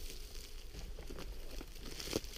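Footsteps rustling and crunching through dry leaf litter on the forest floor, a steady crackling rustle with no single loud event.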